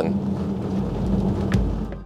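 Tyre and road noise inside a moving electric car on a snow-covered road: a steady hiss with a low hum underneath, fading out near the end.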